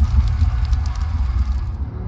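Fire sound effect: a rush of flame noise with crackles over a deep low rumble, the hiss dying away near the end.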